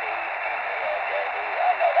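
A single-sideband voice received on the Lab599 Discovery TX-500 HF transceiver and heard through its speaker. A man's voice comes and goes faintly through a steady, narrow band of receiver hiss, typical of SSB reception on the HF bands.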